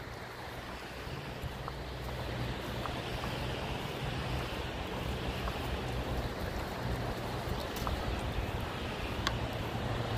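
Steady outdoor wash of wind and shallow water, with a low steady hum underneath and a few faint clicks.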